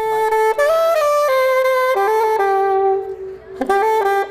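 Solo alto saxophone playing a melodic line: a run of notes that settles into a long held note, a brief break, then a quick flurry of notes near the end.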